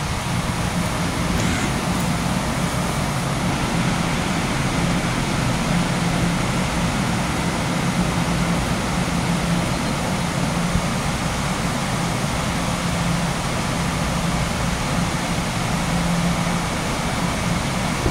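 Steady loud mechanical drone with a low, slightly wavering hum, the background noise of an underground train platform.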